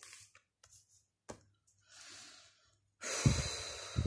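A woman breathing in softly, then letting out a loud sigh about three seconds in, with a few faint clicks of tarot cards being handled before it.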